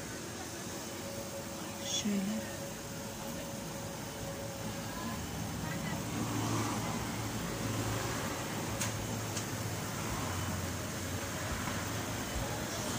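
Street traffic noise, with a vehicle's low engine hum growing louder in the second half. A brief faint voice sounds about two seconds in.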